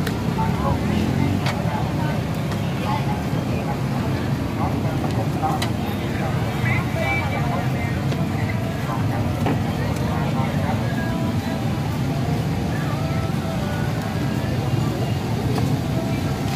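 Steady rumble of street traffic, with people talking in the background and occasional faint clicks.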